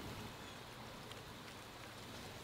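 Faint, steady hiss of outdoor ambience, with no distinct events.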